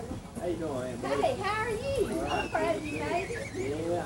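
Indistinct chatter of several voices talking over one another, some of them high-pitched like children's or women's voices, with no words that can be made out.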